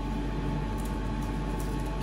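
Steady low hum and hiss of background machinery in a kitchen, with a couple of faint light ticks.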